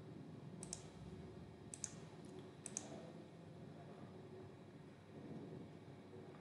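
A few sharp computer mouse clicks about a second apart in the first three seconds, over a faint low room hum.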